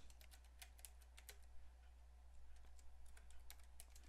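Faint computer-keyboard typing: a quick, irregular run of key clicks as a file name is typed, over a low steady hum.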